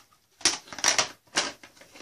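Hard plastic clacks of a VHS tape and its case being handled: three sharp knocks about half a second apart.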